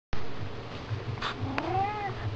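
Domestic cat meowing once: a single call rising in pitch, starting about one and a half seconds in, just after a brief noisy burst and a click.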